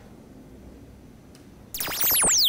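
Quiet room tone, then near the end a loud electronic laser-beam sound effect starts suddenly, a cluster of fast zapping tones sweeping up and down in pitch.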